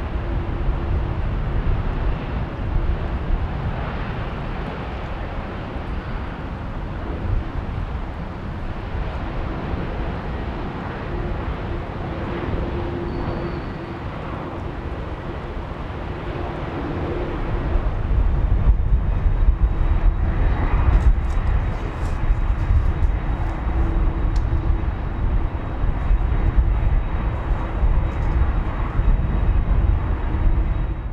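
Jet airliner engines running at low taxi thrust on an airport apron: a steady rush over a low rumble that grows louder about 18 seconds in.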